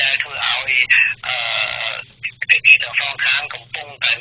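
Speech only: a voice reading radio news in Khmer, with a steady low hum underneath.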